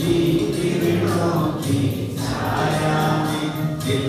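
A song with voices singing together over instrumental accompaniment, held notes and a regular beat.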